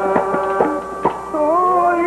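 Sikh keertan: a harmonium holding steady chords under a few tabla strokes, then a man's voice entering in song about a second and a half in.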